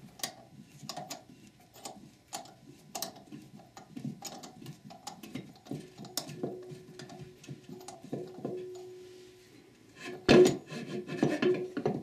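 Threaded T-handle center bolt of a transmission pump puller being turned against the input shaft, a run of small metallic clicks and scraping rubs as the Ford E4OD/4R100 pump is drawn up out of the case. A steady squeak sounds for a few seconds midway, and a louder metal clatter comes near the end as the tool is handled.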